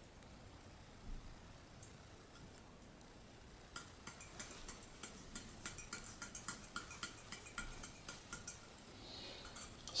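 Leftover alcohol fuel being drained from an aluminum bottle stove into a plastic measuring cup. It is faint at first. About four seconds in comes a run of light ticks, three or four a second, that lasts several seconds and then stops.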